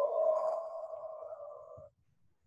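A man's drawn-out hesitation sound, a held vowel like "eee" that fades slowly and cuts off abruptly near the end.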